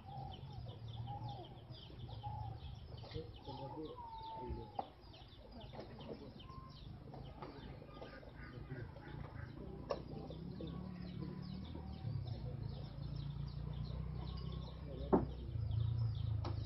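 Faint outdoor ambience with short clucking calls like domestic fowl in the first few seconds, under low indistinct voices and a steady low rumble. A sharp knock sounds just before the end.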